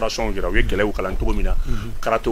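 Speech only: a man talking without a break.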